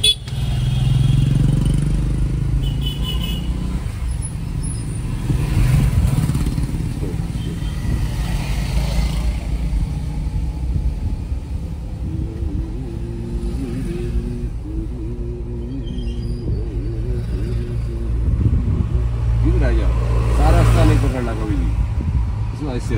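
Cabin sound of a Maruti Suzuki A-Star's small three-cylinder petrol engine and road noise while driving in city traffic, a steady low rumble, with voices talking over it.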